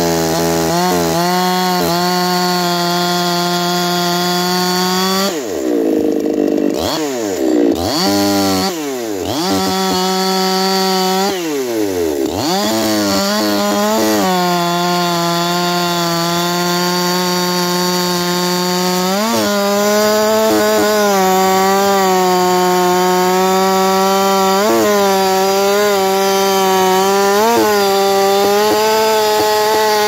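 Ported Echo CS-4910 two-stroke chainsaw with a 20-inch bar and 8-pin rim sprocket cutting through a large oak round at full throttle. The engine revs drop and climb back several times in the first dozen seconds, then hold high and steady under load with a few brief dips.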